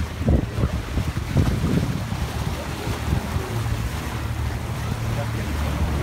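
Wind rumbling on the microphone over the steady low drone of a river cruise boat under way, with water washing past the hull. A few brief voices in the first two seconds.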